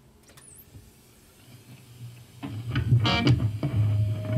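A couple of seconds of near quiet, then playback of a heavy metal mix with electric guitar starts over studio monitors about two and a half seconds in and quickly turns loud.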